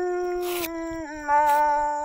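A woman's voice holding one long sung note in a Dao folk love song, the pitch dropping a little about a second in.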